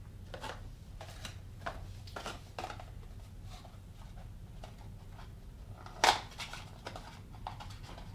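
Handling noises of unpacking a new oil filter: short rustles and light clicks as the filter is taken out of its cardboard box and turned in the hands, with one louder knock about six seconds in.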